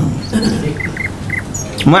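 Three short, faint, high chirps in quick succession about a second in, from a small chirping animal.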